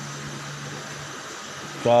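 Steady background hiss with a low hum that stops about halfway, in a pause in a man's speech; his voice comes back near the end.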